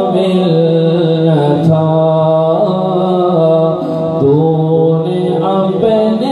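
A man's solo voice singing an Urdu devotional poem unaccompanied, in slow, long-held notes with wavering ornaments.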